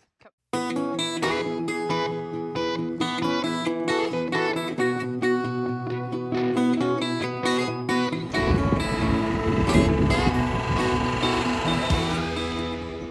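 Background music led by a plucked acoustic guitar, starting after a brief gap about half a second in. A rough, noisy rumble joins under it about eight seconds in.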